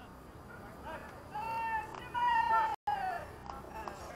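Two long, high-pitched yells from human voices, the second louder and falling slightly in pitch, with a brief cut-out in the audio partway through it.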